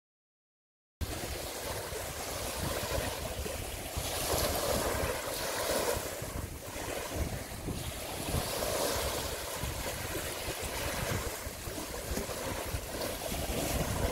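Steady outdoor wind noise buffeting the microphone, starting after about a second of silence.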